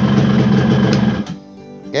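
Yamaha RX-King two-stroke single-cylinder engine idling steadily, then switched off a little over a second in, after which it falls much quieter.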